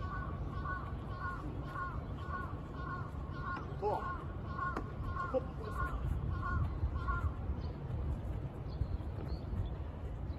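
A bird calling over and over, a short downward-hooked call repeated about two to three times a second, which stops about seven seconds in. A low steady rumble runs underneath.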